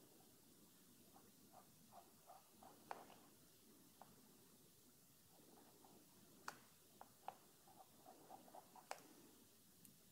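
Near silence, with faint scattered ticks and a few sharper clicks of a small flat brush dabbing acrylic paint onto canvas, coming in two short runs.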